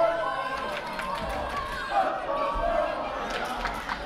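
Small crowd of wrestling fans in a function room, several voices chattering and calling out at once, with a few sharp knocks about two seconds in and near the end.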